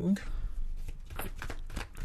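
Tarot cards being shuffled by hand: a run of irregular light clicks and riffles.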